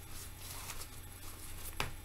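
Rustling and crinkling of a doll's small raincoat being handled and pulled off, with a sharper click near the end.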